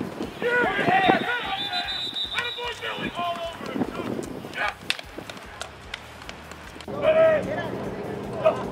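Several voices shouting and cheering a touchdown catch, loudest over the first few seconds, with another shout near the end.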